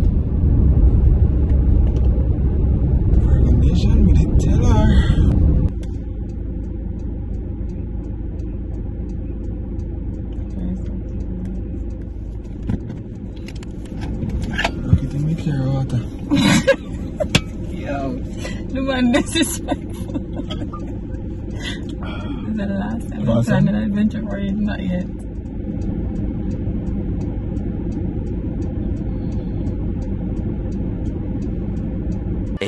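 Road rumble inside a car's cabin, loud for the first five seconds or so, then dropping suddenly to a lower steady rumble, with indistinct talking over it in the middle stretch.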